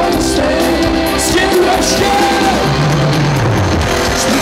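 Live rock band playing: a male vocalist singing over electric guitars, bass guitar and drums, amplified through a stage PA.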